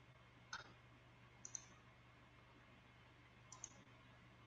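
Near silence: a faint steady low hum with a few faint clicks, one about half a second in, a quick pair around a second and a half, and another pair near the end.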